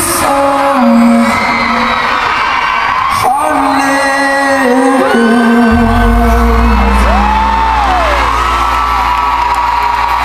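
Live pop song: a male voice singing with acoustic guitar through an arena PA, heard from the audience, with fans whooping over it. A low steady hum comes in about halfway through.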